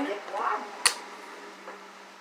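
One sharp click just under a second in as hands handle a collectible Pokémon coin and trading cards at a table, over a faint steady hum.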